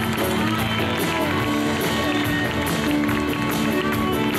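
Live country band playing through the stage speakers: electric and acoustic guitars over a drum kit keeping a steady beat.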